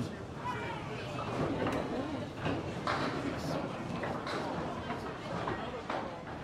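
Candlepin bowling alley ambience: background chatter with a few faint knocks from balls and pins on the lanes.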